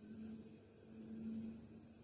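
Faint, quiet sound of a lidded steel pan cooking on a gas stove, with a low steady hum. The frying is muffled by the closed lid.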